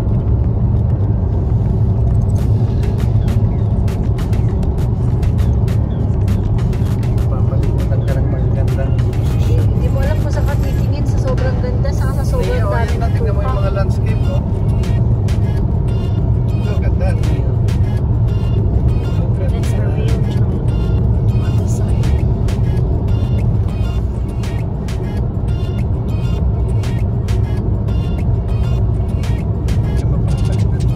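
Steady low road and engine drone inside a moving car, with music over it: a steady beat starting about two seconds in and a singing voice that is clearest in the middle.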